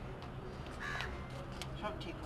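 Crows cawing, a few short calls over a steady low outdoor background.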